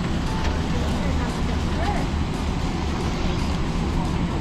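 Steady low rumble of airliner cabin noise heard from inside the passenger cabin.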